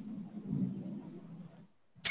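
Faint background noise and low murmur picked up through participants' open microphones on a video call, rising and falling unevenly.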